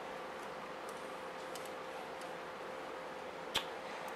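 Upright garment steamer running, a steady hiss of steam from the hand-held head with a faint steady hum under it, and a single sharp click near the end.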